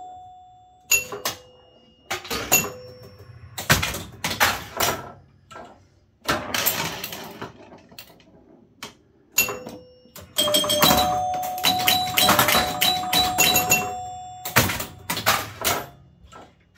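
Bally Old Chicago electromechanical pinball machine in play: chime bells ring out with each score, among rapid clicking and clatter from its relays, score reels, flippers and bumpers. The clatter comes in bursts, with a lull near the middle and the busiest run of ringing and clicking in the second half.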